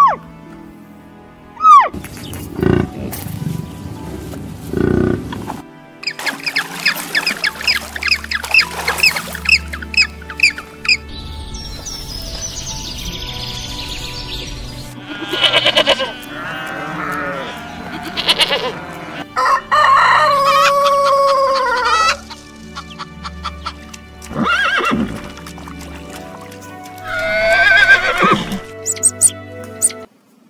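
Background music under a series of separate animal calls, each lasting a second or two, one after another.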